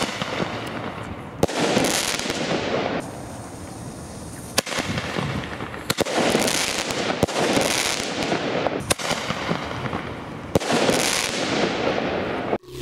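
A series of sharp firecracker bangs from Panda Defender Bombenrohr tube firecrackers, about six of them, one to three seconds apart. Each bang is followed by a second or more of rushing noise.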